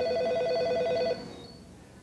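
Electronic telephone ringer trilling with a fast two-tone warble, an incoming call. The ring stops about a second in and dies away.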